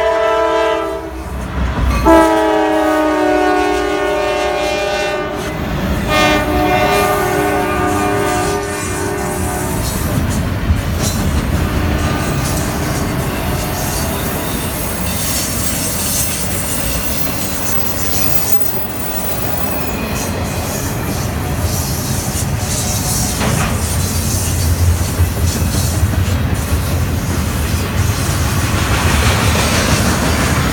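A Norfolk Southern freight train led by three GE Dash 9 diesel locomotives passes at track speed. Its air horn sounds in three long blasts over the first ten seconds, and the pitch drops as the lead locomotive goes by. After that comes a steady rumble and clickety-clack of wheels on rail as the intermodal trailer cars roll past.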